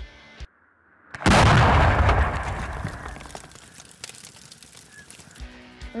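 An explosion: a sudden loud boom about a second in, after a brief drop to near silence, then a rumble that fades away over the next few seconds.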